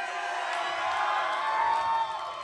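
Concert audience cheering and whooping, many voices shouting at once in a dense, steady mass.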